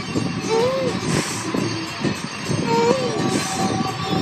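Toddler whimpering with his mouth full of food: two short whines that rise and fall in pitch, over a busy background of household noise.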